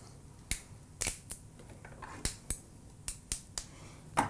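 Fresh asparagus spears being snapped by hand, a series of about eight sharp, crisp snaps at irregular intervals.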